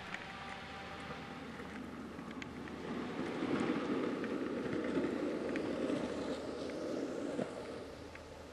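Longboard wheels rolling on asphalt: a rough, steady rumble that grows louder a couple of seconds in as the board nears and drops away just before the end.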